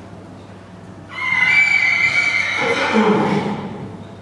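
A horse whinnying: one loud call of almost three seconds, starting high and falling in pitch toward the end.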